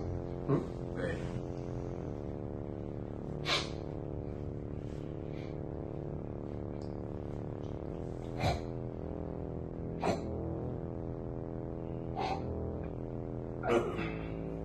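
Sustained, steady background music that changes chord a few times, with about six short, sharp sounds standing out over it a second or more apart.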